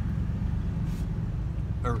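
Steady low rumble of a car's engine and tyres heard from inside the cabin as it drives slowly, with a word of speech near the end.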